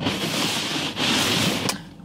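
Two spells of rustling noise, each just under a second, with a sharp click near the end.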